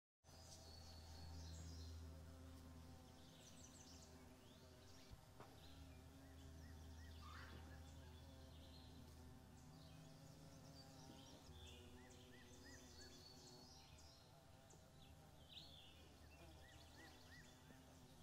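Faint outdoor background of small birds chirping on and off, over a low steady hum.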